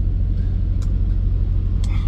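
A steady low background rumble, with a faint click a little under a second in.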